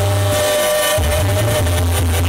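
Live banda sinaloense music from a brass band, played loud over a concert sound system: horns hold notes above a heavy tuba bass line that drops out briefly about half a second in.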